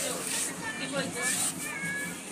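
Young children's high-pitched voices: several short squealing calls, about one every half second, over a low murmur of party chatter.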